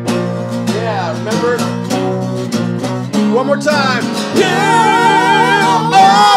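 Live acoustic guitar and electric guitar playing a song together with a voice singing. In the second half, long wavering held notes come in over the strumming.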